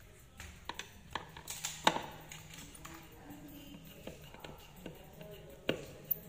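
Scattered clicks and knocks of hands and a screwdriver handling a speaker cabinet, the loudest about two seconds in and just before the end.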